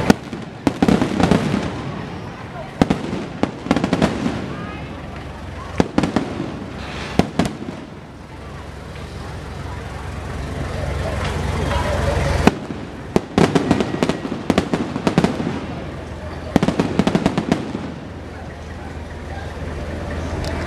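Fireworks bursting overhead in clusters of sharp bangs and crackles every few seconds, the loudest single bang about twelve seconds in, over the steady chatter of a large street crowd.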